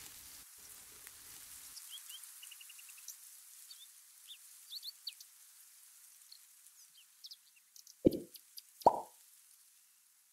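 Small birds chirping faintly in short bursts over a steady hiss. Near the end come two sudden low thuds, less than a second apart, which are the loudest sounds.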